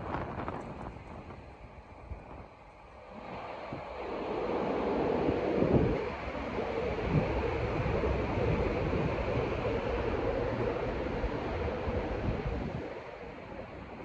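Street traffic swelling up about three seconds in and holding for several seconds before easing near the end, with wind buffeting the microphone.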